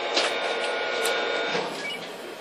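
Korail 8200-class electric locomotive standing coupled, its electrical equipment and cooling blowers giving a steady whine and hum. Two short clicks come about a quarter second and a second in.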